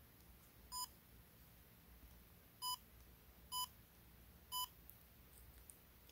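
DJI Osmo Pocket handheld gimbal camera giving four short electronic beeps as its buttons are pressed: one about a second in, then three more about a second apart.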